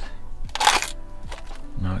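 A short crackling crunch about half a second in, as an aluminium sparkling-water can that has burst open from its frozen contents is handled, with ice slush packed inside it. Background music plays underneath.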